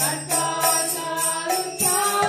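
Devotional chanting with voices singing a mantra over a steady beat of small jingling hand cymbals, about two to three strikes a second, and a low sustained drone.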